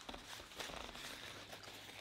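Faint chewing and mouth sounds of someone eating a bite of pizza, soft and irregular, over a low steady hum.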